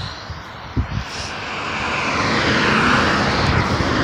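A road vehicle passing by: its rushing engine and tyre noise swells to a peak about three seconds in, then begins to fade. Two light knocks come about a second in.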